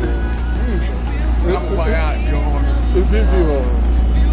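Outboard motor of a small boat running steadily, a continuous low drone, with people's voices loud over it.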